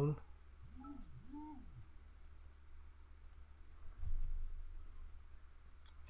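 Faint computer mouse clicks while a program window is being opened, with a short hummed sound that rises and falls twice about a second in.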